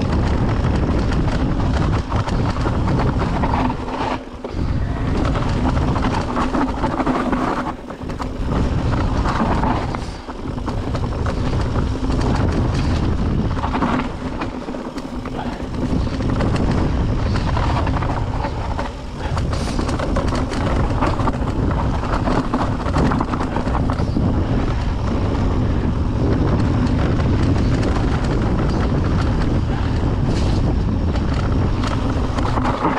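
Wind rushing over the camera microphone and knobbly tyres rolling over a dirt and gravel trail as a mountain bike rides fast downhill. The loud rushing noise drops briefly several times.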